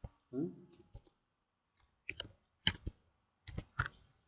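Computer keyboard keystrokes: about seven sharp, separate clicks at an uneven pace as a word is typed. A brief murmur of the voice comes about a third of a second in.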